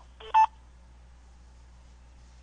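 Telephone conference line: a short pitched sound of about a quarter second just after the start, then faint steady line hum.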